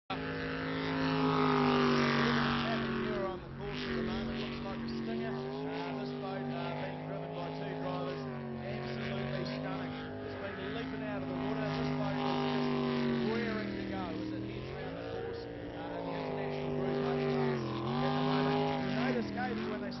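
Jet sprint boat's engine running hard at racing revs, its note dipping briefly in pitch a few times and recovering.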